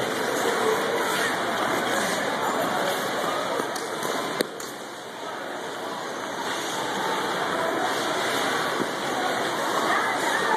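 Indoor ice rink hubbub: a steady rushing noise of skate blades on the ice in a large echoing hall, with indistinct voices mixed in. A single sharp click comes about four and a half seconds in, and the noise drops a little quieter for a moment after it.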